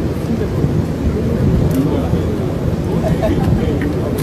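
Loud, steady low rumble of airfield noise around a parked military cargo jet and a working forklift, engine and wind noise blended, with faint voices underneath.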